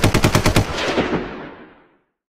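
Rapid burst of machine-gun fire, about a dozen shots a second, ending after about half a second and trailing off in an echoing fade that dies out near the end.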